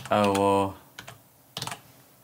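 Keystrokes on a computer keyboard as a command is typed: a few separate clicks, then a quick cluster near the end. A man's voice makes a short sound, about half a second long, right at the start and louder than the typing.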